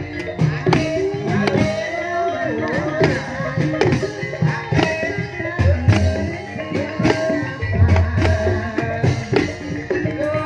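Banyumasan gamelan music for an ebeg dance: melodic gamelan with struck drum beats and a singing voice, playing on without a break.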